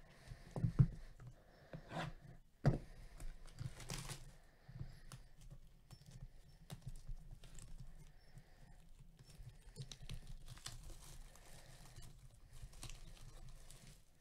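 Gloved hands handling a cardboard trading-card hobby box: several sharp knocks and taps in the first few seconds, then softer rustling and scraping as the box is turned and worked open.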